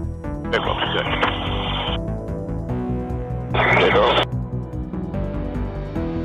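Background music, with two short bursts of a thin, radio-like voice over it: the first lasts about a second and a half, the second under a second, about three and a half seconds in. The speech cannot be made out.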